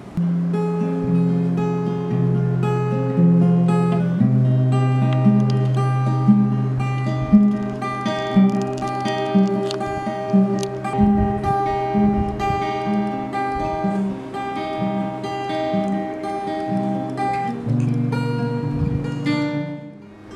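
Steel-string acoustic guitar playing a slow melody, picked notes repeating about twice a second over low held notes; the playing stops near the end.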